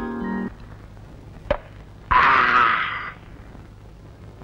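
Film background music: an electric guitar phrase with effects steps down in pitch and stops about half a second in. Then comes a single sharp knock, and a little over two seconds in, a loud noisy burst lasting about a second.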